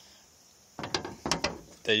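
Rusted sheet-metal door-post section being turned over in the hands: a quick run of clicks and small metal rattles lasting about a second, starting nearly a second in.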